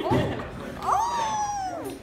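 A person's high, meow-like vocal call: one long cry about a second in that jumps up in pitch and then slides slowly down, after a brief burst of voice at the start.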